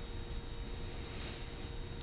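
Room tone during a pause in speech: a steady, faint hiss with a thin, steady hum underneath and no distinct events.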